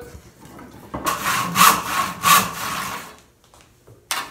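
Pine 2x4 rasping against wood as it is worked in the bench vise: a rough scraping noise with two louder strokes a little under a second apart.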